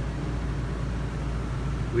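RV air conditioner running with a steady hum, without change.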